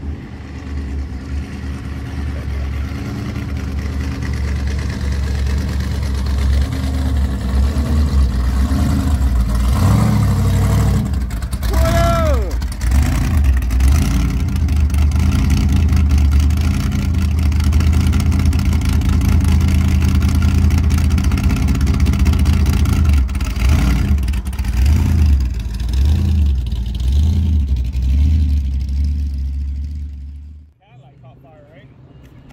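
A car engine running loud and close with a deep, low rumble and some revving, growing louder over the first several seconds. Voices in the background.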